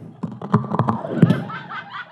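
Handheld microphone being handled and pressed against the mouth, a quick run of clicks and knocks through the PA, loudest a little past the middle.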